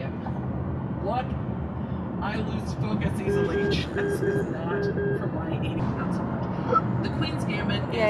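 Steady low drone of car cabin noise, road and engine, heard from inside the car, with a short run of electronic beeps about three to five seconds in.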